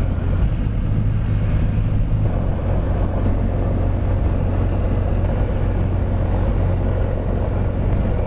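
Beechcraft Bonanza's single piston engine and propeller running at low taxi power, heard from inside the cockpit as a steady low drone.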